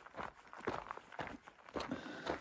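Footsteps of a hiker walking on a rocky dirt trail: a run of short, uneven steps at a walking pace.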